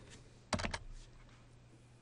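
A short burst of a few quick computer keyboard key presses about half a second in, each a sharp click.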